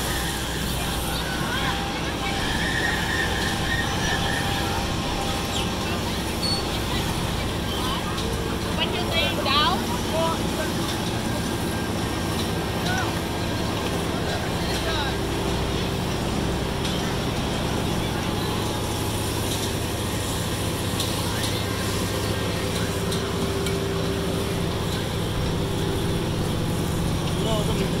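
Fairground ambience: a steady low mechanical hum from ride machinery and generators under scattered voices of people nearby. A short burst of raised voices comes about nine seconds in.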